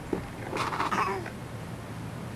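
A toddler's brief, high-pitched vocal sound about half a second in, trailing off downward.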